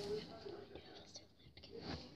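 A girl whispering quietly.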